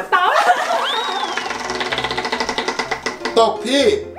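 Tabletop prize wheel spinning, its pointer clicking rapidly against the pegs as it goes round, with excited voices over it.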